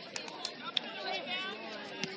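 Indistinct chatter of several voices, players and spectators calling and talking at once, with a few short sharp taps in between.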